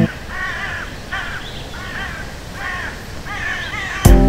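A bird calling over and over, about two short arched cries a second, over a low rushing hiss, with no music.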